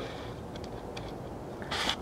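A pause between speech: steady low background hiss, then a short breath in near the end.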